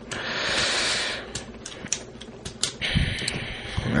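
Plastic parts of a Transformers Dark of the Moon Voyager Class Shockwave figure being handled: a brief scraping rustle in the first second, then a series of small, irregular plastic clicks as pieces are turned and pushed into their slots.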